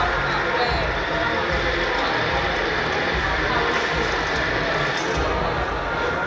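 Steady hubbub of many people talking at once in a busy room, with no single voice standing out.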